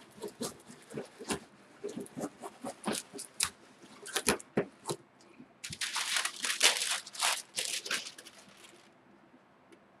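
A homemade bamboo-toothpick baren rubbed over print paper on an inked lino block, making short scratchy strokes as it burnishes the ink onto the paper. About six seconds in, the parchment paper over the print rustles for roughly three seconds as it is lifted off.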